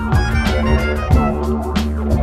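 A world-beat electronic DJ track with a steady beat, and a live didgeridoo droning low beneath it.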